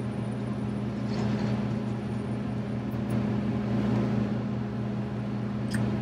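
John Deere 70 Series combine engine running steadily at high idle, heard inside the cab as an even low hum, as the header calibration requires.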